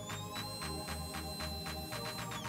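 Electronic background music with a steady beat, over the thin high whine of a 17,000KV 7x16 mm micro drone motor spinning a three-blade prop on a thrust stand. The whine rises in pitch just after the start as the throttle steps from half to full power, then holds steady.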